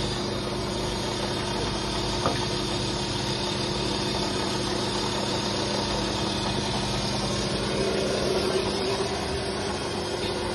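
Steady hum of an interlocking block press's motor-driven hydraulic power unit running at a constant pitch. There is a single sharp knock about two seconds in, and a louder rustle near the end as soil is tipped into the machine's hopper.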